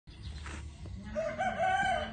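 A rooster crowing: one long held call that starts a little over a second in.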